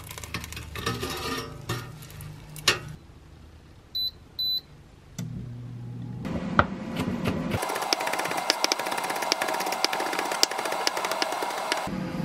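Air fryer being worked: clicks and knocks of the basket being handled, two short high beeps from its touch panel about four seconds in, then the fan starting up as a steady hiss through the second half.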